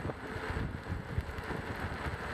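Wind buffeting the microphone and tyre rumble on rough asphalt from a Xiaomi M365 electric scooter riding along as it picks up speed, with small irregular bumps.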